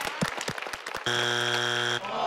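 Scattered clapping, then about a second in the Family Feud strike buzzer sounds: a loud, flat, steady buzz lasting about a second, meaning the answer is not on the board.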